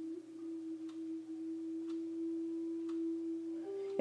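Soft background music: a single pure sustained note held steadily, stepping up slightly in pitch near the end.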